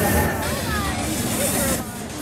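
Outdoor crowd ambience: people talking indistinctly over a steady background rumble and hiss. The sound dips briefly near the end.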